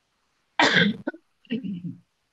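A person coughs once, a sudden loud cough about half a second in, followed near the end by a short voiced throat-clearing sound.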